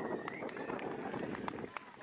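Faint voices of people talking in the background over a low outdoor hum, with scattered light clicks and taps.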